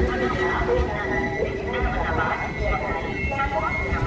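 Indistinct voices over a steady hum and a low rumble from the AC double-decker express coaches as they roll slowly past.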